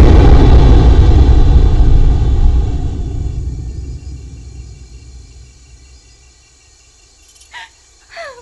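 A deep, low rumble dying away over about five seconds, the tail of a heavy crash as the giant's body slams into the ground. A brief call with a falling pitch sounds near the end.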